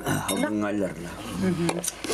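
A man's voice speaking, with a couple of light clinks near the end.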